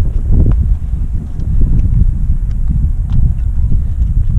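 Wind buffeting the microphone in a low, steady rumble, with a few faint plastic clicks as the folding arms of a Hubsan Zino drone are swung open.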